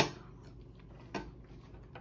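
A metal fork clicking twice as a forkful of food goes into the mouth: a sharp click at the start and a softer one about a second later.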